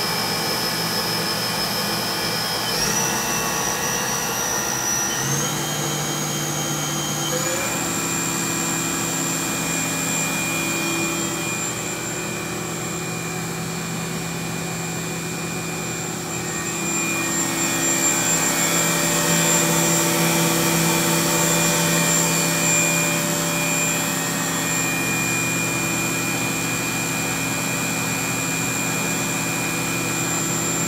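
Haas VF-1B vertical machining center's gear-head spindle running with no cut, its whine rising in pitch in steps over the first several seconds, then holding steady at about 10,000 rpm.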